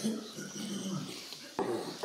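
A low, quiet murmured voice, the close of a silently recited prayer, with a short sharp rustle or breath about a second and a half in.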